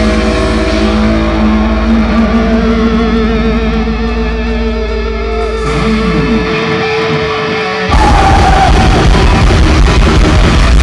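Heavy metal band playing live: held, ringing electric guitar notes with wavering vibrato over a low drone, a falling glide about six seconds in, then the full band with drums crashing back in louder about eight seconds in.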